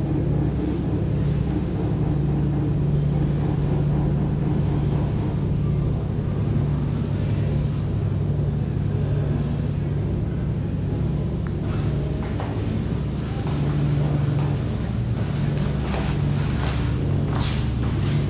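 A steady low mechanical hum. Several light clicks and knocks come in the second half.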